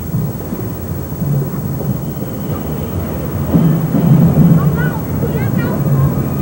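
Low rumbling outdoor noise of wind on the microphone and street-crowd noise, louder from about halfway, with a voice briefly calling out near the end.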